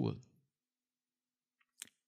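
A man's speaking voice trailing off on one word, then silence broken near the end by a single short click: a mouth click just before he speaks again.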